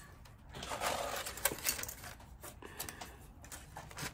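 Light rustling and scattered small clicks of cut-up plastic bottle pieces being handled and stacked.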